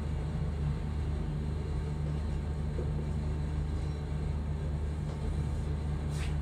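A steady low hum with a few fixed low pitches, even in level throughout, such as a fan or electrical hum in a room.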